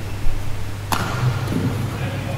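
A badminton racket strikes a shuttlecock once, a single sharp crack about a second in, over a steady low hum.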